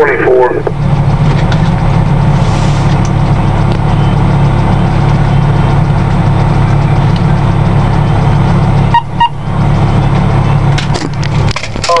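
Fire engine's diesel engine droning steadily, heard from inside the cab. There is a brief dip about nine seconds in and a few clicks near the end.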